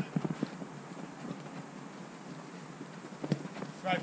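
Soft thumps of play on an artificial-turf football pitch: a quick run of them at the start and one more about three seconds in, over a faint steady outdoor hiss. A man says a word at the very end.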